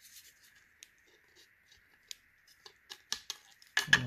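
Plastic action figure and its plastic display base being handled and fitted together: a scatter of light clicks and scrapes, growing busier toward the end, with the loudest click just before the end as the figure is pressed onto its stand.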